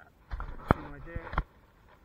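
A person speaks for about a second, with two sharp clicks during the talk, the louder one in the first half and a second near the end of it.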